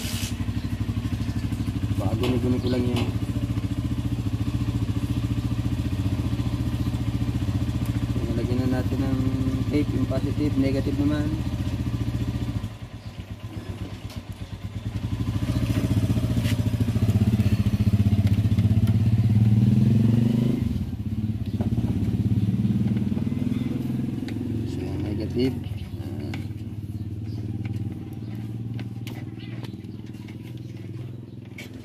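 An engine running close by, a steady low hum with a brief drop about 13 seconds in. It then runs louder with its pitch rising and falling for a few seconds before easing off toward the end.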